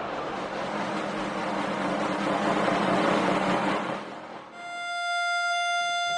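Background score: a dense rushing swell for about four seconds, which dips and gives way to a single steady high note held to the end.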